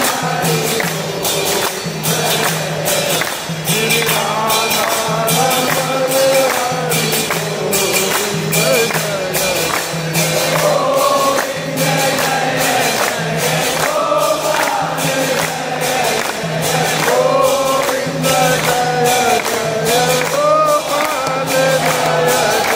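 A crowd of devotees singing an aarti hymn together, with steady rhythmic hand-clapping at about two to three claps a second. A low pulse repeats about once a second under the singing.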